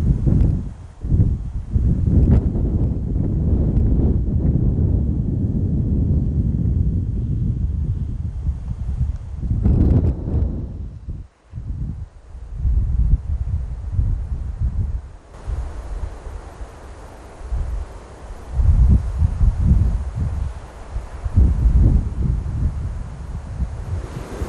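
Wind buffeting the microphone: a low rumble that surges and fades in gusts, dropping out briefly about halfway through.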